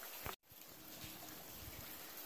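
Faint, steady outdoor background noise with no distinct event, broken by a brief total dropout about half a second in where the video cuts.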